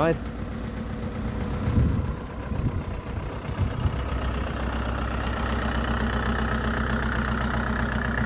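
An engine idling steadily, heard clearly from about halfway in, after a stretch of uneven low noise.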